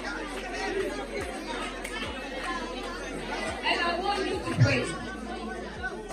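Congregation praying aloud all at once, many voices overlapping in a hall, with one voice rising louder about four and a half seconds in.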